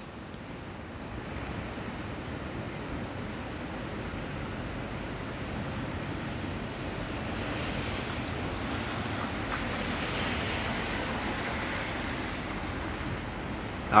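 Steady rushing background noise, no speech, swelling slightly in the middle.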